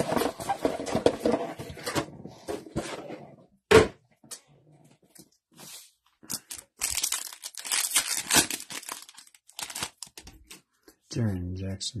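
Foil trading-card pack wrappers crinkling and being torn open by hand, in two crackling spells, one at the start and one past the middle. A single sharp snap just before the four-second mark is the loudest sound.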